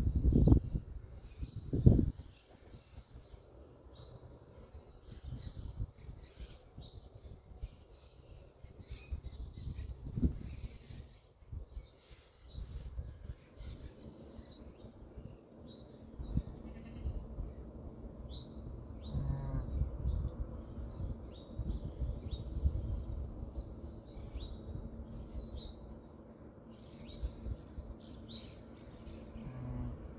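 Small birds chirping on and off, over a low rumbling background, around a ewe in labour. Two louder sounds in the first two seconds stand out.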